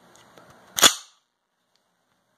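A single loud, sharp metallic clack from the CZ Scorpion Evo 3 S1 pistol's action as it is worked on an empty chamber, about 0.8 s in, with a few faint handling clicks just before it.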